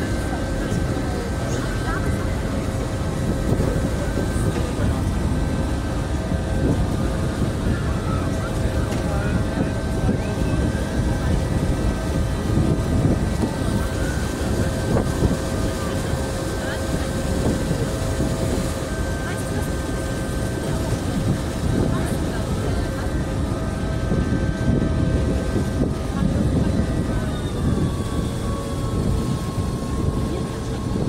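Passenger boat's engine running steadily: a low rumble with several held hum tones, some of which drop in pitch near the end, with wind buffeting the microphone.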